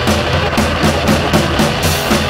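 Garage punk rock recording: distorted electric guitar over a drum kit pounding out a fast, even beat of about four strokes a second.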